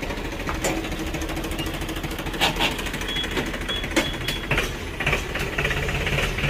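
Diesel engine running at idle with a rapid, even clatter, with a few sharp clicks over it.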